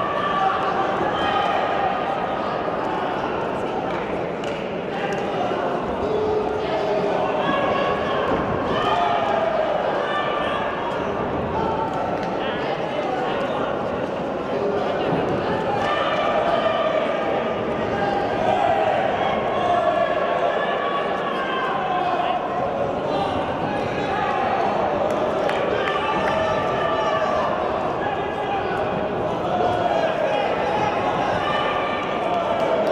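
Arena crowd shouting and calling out during a kickboxing bout, many voices overlapping without a break, with occasional thuds from the fighters in the ring.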